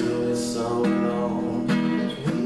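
Small acoustic guitar being strummed: chords ring on, with fresh strokes about a second in and again near the end.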